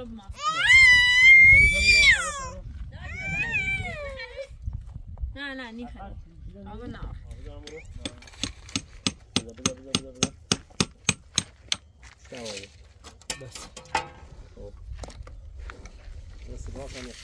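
A loud, high-pitched call near the start, then a run of about a dozen quick hammer blows, roughly four a second, on a wooden pallet gate being fixed in place.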